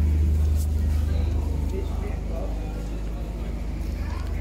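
Busy pedestrian street ambience: a steady low rumble that fades after about two seconds, under faint voices of passers-by.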